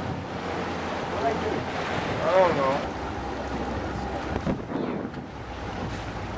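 Wind noise on the microphone and water rushing past a moving boat, with a low steady engine hum underneath. A voice is heard briefly about two and a half seconds in.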